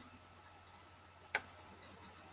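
A single sharp click a little past halfway, over a faint steady hum and room noise.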